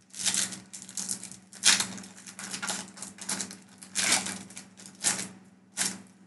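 Pokémon trading cards and a booster pack handled by hand: irregular short rustling, crinkling bursts, about two a second, over a steady low hum.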